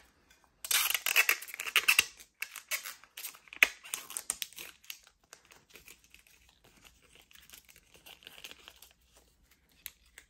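Plastic protective film being peeled off a metal business card case: a crackling, tearing sound, loudest in the first couple of seconds, with a couple of sharp clicks, then fainter crinkling that fades out.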